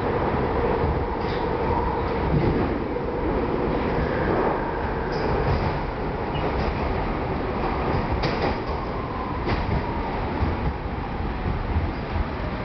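Budd-built PATCO railcar running through the subway tunnel and along an underground station platform, heard from on board: a steady rumble and faint motor whine with occasional sharp clicks from the wheels passing over rail joints.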